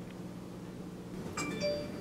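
Mobile phone text-message alert chime: two quick ringing notes about a second and a half in, over a low steady hum.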